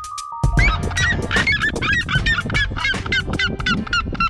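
Red-legged seriemas calling: a rapid run of short yelping notes, about five a second, that starts about half a second in.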